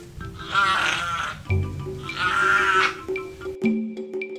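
Background music with a steady drone, over which an animal calls out twice, each call about a second long with a quavering pitch.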